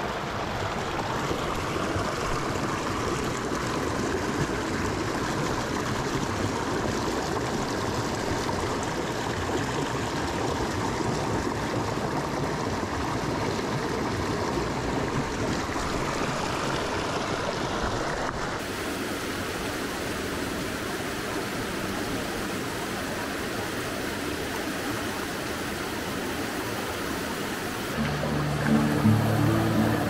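Steady rush of flowing stream water, changing abruptly in tone a little past halfway through. Background music comes in near the end.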